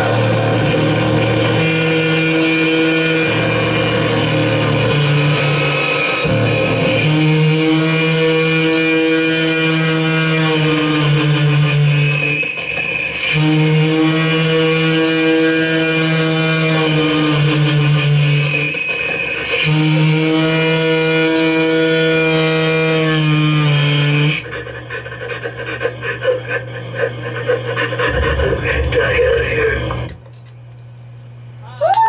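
Loud live electronic noise music: layered held drone tones from effects gear, in long sections of about six seconds with brief breaks. About 24 seconds in it drops to a quieter, duller, fluttering buzz.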